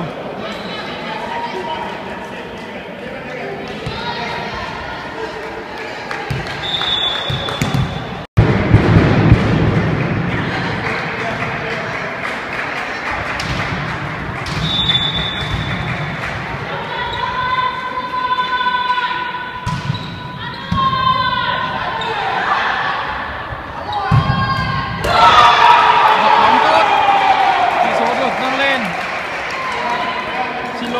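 Volleyball being played in a sports hall: the ball struck and bouncing on the court and players calling out to one another, all with the hall's echo. Voices are loudest near the end.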